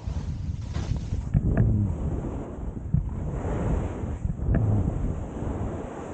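Wind buffeting the microphone of a camera carried by a skier on the descent, mixed with the hiss of skis sliding through snow. The rushing noise rises and falls in uneven swells.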